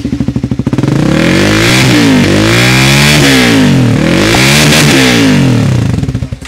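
Triumph Speed 400's single-cylinder engine, exhausting through a full-system bend-pipe header and the stock silencer, idles and is then revved up twice with the throttle, rising and falling each time before easing back to idle.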